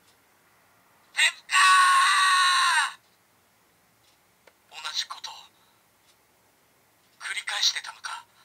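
Recorded lines in the voice of Kamen Rider Ryuki's hero, played through the CSM V Buckle's small built-in speaker and sounding thin and tinny. A long shout that falls in pitch at its end comes about one to three seconds in, followed by two shorter spoken lines, with a faint click just before the second line.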